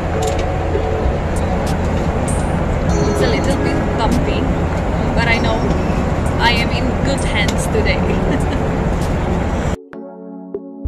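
Steady airliner cabin noise in flight, a low rumble with a rushing hiss, with indistinct voices over it. It cuts off abruptly just before the end, where music takes over.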